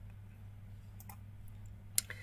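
Computer mouse clicking over a faint, steady low hum: two faint clicks about a second in, then a sharper click near the end.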